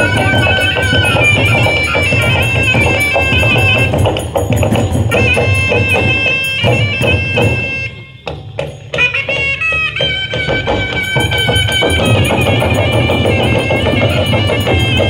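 Live Gudum baja folk band playing for the dance. A reedy wind instrument carries a stepping melody over drums and jingling metal percussion. The music drops out briefly about eight seconds in, then picks up again.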